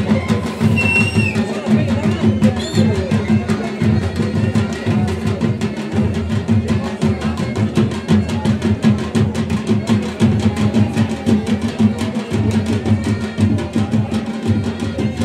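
Dhol drums beaten in a fast, steady rhythm, with crowd voices underneath.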